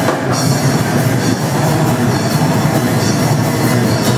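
Death-thrash metal band playing live: heavily distorted electric guitars over drums, loud and dense throughout.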